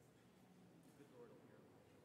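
Near silence: faint room tone of a large church, with a faint, indistinct murmur of voices.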